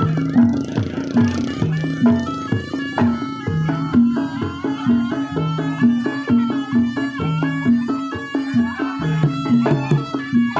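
Javanese jaranan gamelan ensemble playing: kendang hand drums beat a quick steady rhythm over a repeating low two-note pattern from the gongs and kettle-gong chimes, with a busy higher melodic line on top.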